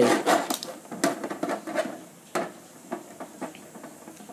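Plastic wrestling action figures being handled, giving a few scattered clacks and knocks, the loudest about a second in and again near two and a half seconds.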